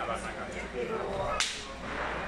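A single sharp firecracker crack about one and a half seconds in, over the chatter of a street crowd.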